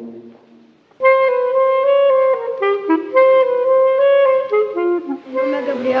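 A wind instrument playing a melody of held, stepwise notes, starting about a second in after a brief near-quiet.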